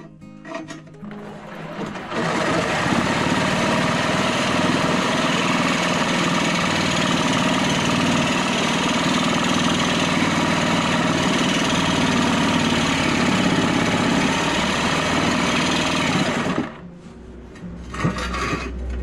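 Reciprocating saw cutting through a galvanized steel channel, running steadily for about fifteen seconds from about two seconds in, then stopping shortly before the end.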